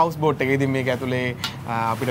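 A voice speaking, in a language the recogniser could not follow.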